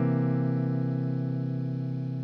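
Semi-hollow electric guitar holding the final C chord of a 12-bar blues, the chord ringing out and slowly fading.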